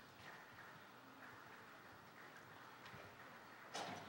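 Near silence: faint room hiss, with one short noise near the end.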